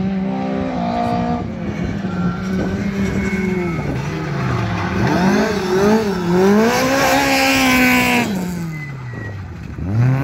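Rally car's four-cylinder engine revving hard, its pitch climbing and dropping several times with gear changes, loudest about seven to eight seconds in. Near the end the pitch falls away steeply as the driver lifts off.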